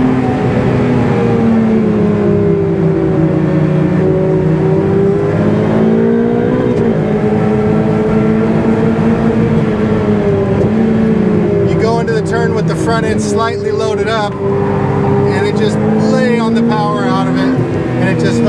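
Ferrari 488 Pista's twin-turbo V8 running hard at high revs on a fast lap, its pitch easing and rising a little with throttle and corners, over steady road and tyre noise.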